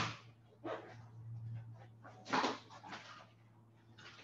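Handling noise as a power cable is plugged into a device: a few short knocks and rustles, the loudest a little past halfway, over a low steady hum.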